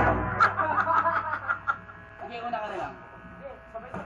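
Guitar amplifier hum and buzz in a pause in the playing, with quiet talking and a chuckle over it; a loud low note from the band rings out and dies in the first half-second.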